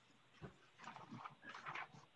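Faint, short rustling sounds and a soft knock close to the microphone, over quiet room tone.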